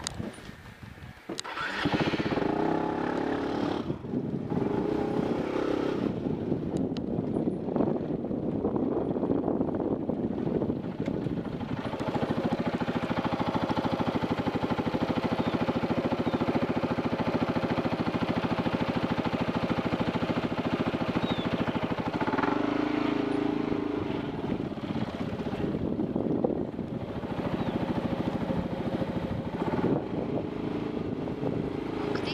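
Motorcycle engine starting about a second and a half in, then running steadily as the bike moves off at low speed.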